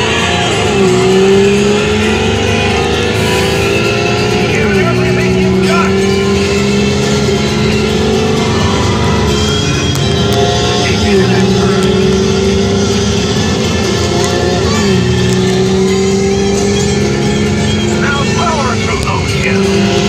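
Radiator Springs Racers ride vehicle racing along the track, its engine sound climbing in pitch and dropping back as if shifting gear, about every four seconds, over rushing wind and track noise.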